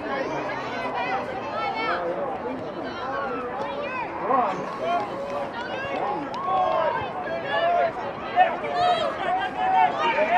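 Touch football players and sideline spectators calling and shouting to each other, several voices overlapping with no clear words.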